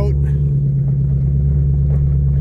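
Ford Mustang GT500's supercharged V8 running steadily as the car moves slowly, a low, even engine sound heard from inside the cabin.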